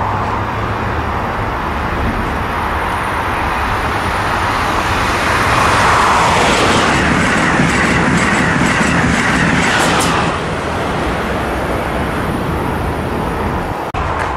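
Amtrak Acela Express high-speed trainset passing at speed: a rush of wheel and air noise builds as it approaches, peaks with a rapid run of wheel clicks as it goes by, then drops off sharply about ten seconds in.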